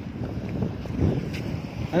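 Wind buffeting a phone's microphone: an uneven low rumble.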